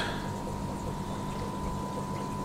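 Steady fish-room background: a low hum with a thin steady tone over it and a soft watery hiss and trickle, typical of air-driven aquarium sponge filters running.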